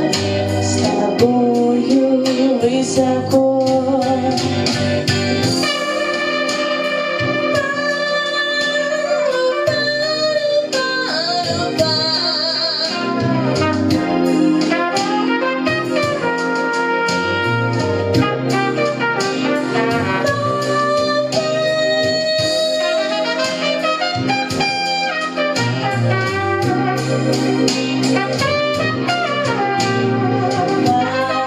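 Backing track of a slow blues song playing through an instrumental stretch, with a sustained lead melody line over bass and accompaniment.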